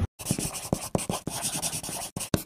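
Pen-on-paper writing sound effect: a run of quick scratchy strokes, several a second, starting just after a sudden cut.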